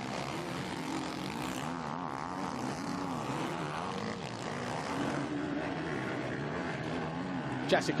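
Motocross bikes racing, their engines revving, the pitch rising and falling over and over.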